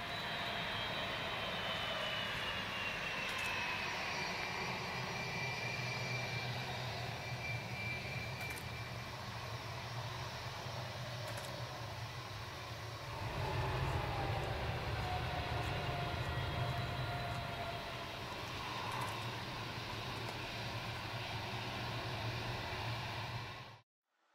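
Boeing 757-200 jet engines whining over a steady rush as the airliner rolls along the runway. The whine falls in pitch, twice, and a deeper rumble swells about halfway through. The sound cuts off abruptly just before the end.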